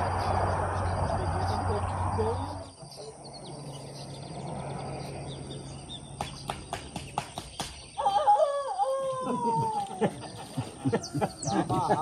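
Steady rushing noise with a low hum that stops about three seconds in, then a run of sharp clicks. A rooster crows once in a long drawn-out call about eight seconds in, and short chirps follow near the end.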